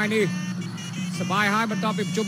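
Traditional Khmer boxing music: a sralai reed pipe playing a wavering, sliding melody over a steady low drone, with a voice mixed in.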